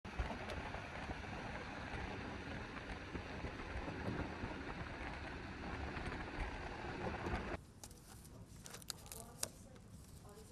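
Steady outdoor city noise with wind rumbling on the microphone, cutting off suddenly about three-quarters through. A quiet room follows, with sheets of paper rustling and crackling as pages of a document are turned.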